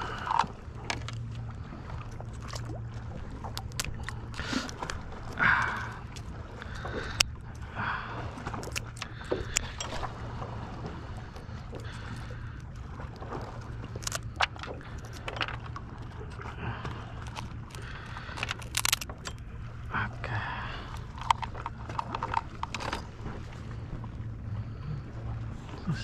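Scattered clicks, snips and cracks of scissors cutting a live crab's shell for tautog bait, over a steady low hum.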